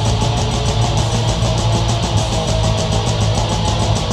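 Heavy metal music with no vocals: dense, heavily distorted electric guitars over fast, even drumming, loud and unbroken.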